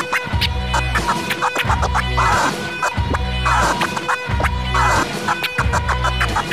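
A DJ scratching a record on a turntable over a loud, steady hip-hop beat with heavy bass. The scratch strokes recur every second or so, with many short sharp cuts between them.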